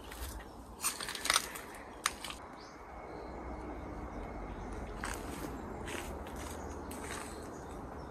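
Footsteps crunching over dry leaves and debris: a cluster of sharp crunches in the first two seconds, then a few softer steps later.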